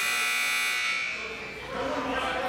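Gymnasium scoreboard buzzer sounding a long, harsh electronic tone that fades out about a second in, with voices in the gym under it.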